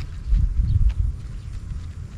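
Low rumbling and bumping noise on the microphone outdoors, strongest in the first second, with a few faint clicks.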